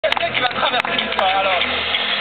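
People's voices over a steady low rumble.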